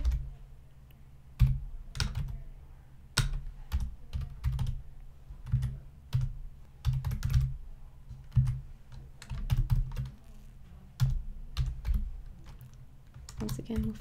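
Typing on a computer keyboard: irregular clusters of keystrokes separated by short pauses.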